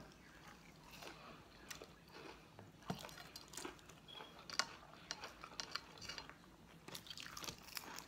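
Faint chewing and biting of crunchy battered fried food close to the microphone: irregular small crisp crunches and mouth clicks.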